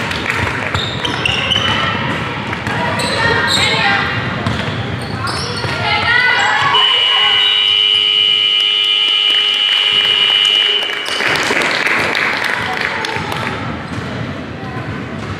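Gym scoreboard buzzer sounding one long steady tone for about four seconds, starting about seven seconds in, likely the final buzzer ending the game. Before and after it there are players' voices and ball bounces on a hardwood floor, echoing in a large hall.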